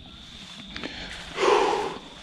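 A person's short breathy exhale, close to the microphone, about one and a half seconds in, after a couple of faint ticks.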